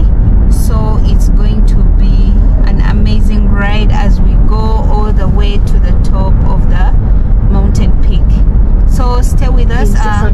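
Steady low road and engine rumble inside a moving car, with a person's voice talking over it for much of the time.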